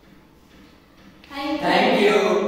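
Several young voices saying a short phrase together in unison, starting about two-thirds of the way in after a quiet stretch of room tone.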